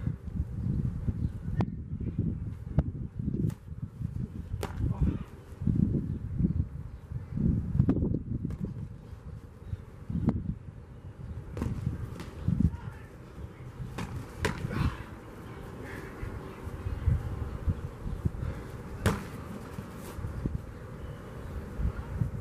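Boxing gloves smacking as punches land during sparring, in sharp, scattered hits at irregular moments. Under them runs a low, uneven rumble of wind on the microphone.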